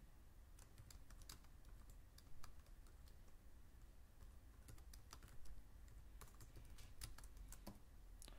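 Faint, irregular keystrokes of typing on a computer keyboard.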